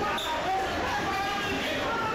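Actors' raised voices on stage in a large, echoing hall, with thuds during a scuffle.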